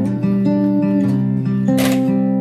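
Background music: an acoustic guitar playing a melody of held, changing notes, with a short noisy burst near the end.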